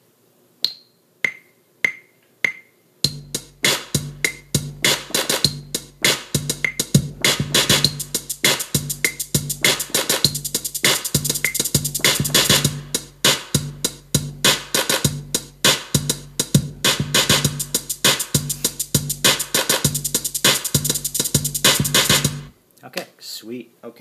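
iMaschine drum-machine app on an iPad: four metronome clicks count in at about 100 BPM, the first one higher, then a loop of programmed drums plays over a deep, steady bass while new hits are tapped in on the pads. The beat cuts off suddenly near the end.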